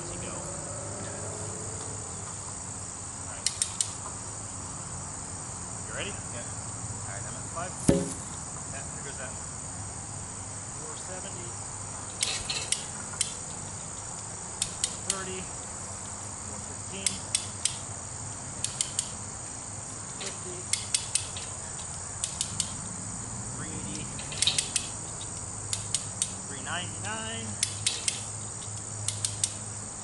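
Steady high drone of crickets, with repeated sharp clicks in pairs and threes from a hand-crank winch's ratchet as the tower's pull cable is wound in under load. One heavy thump about eight seconds in.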